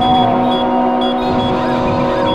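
Minimal glitch electronic music: several held synthesizer drones over a grainy, crackling low texture, with short high beeps recurring every fraction of a second.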